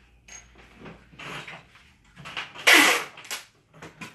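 Handling noises from fitting a canvas into a picture frame: a few faint clicks early on, then one short, loud scrape or rustle a little under three seconds in.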